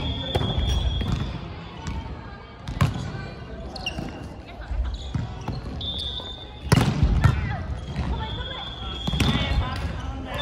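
Volleyball rally in a gymnasium: the ball is hit several times with sharp smacks, the loudest about seven seconds in, while players call out to each other. The hall's echo carries the sound.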